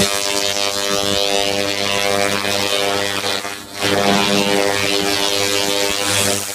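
Handheld laser rust-removal head buzzing steadily with a hiss as it strips rust from cast iron. It cuts out briefly about three and a half seconds in, then starts again.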